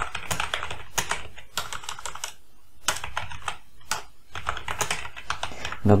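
Typing on a computer keyboard: irregular runs of key clicks, with a couple of brief pauses.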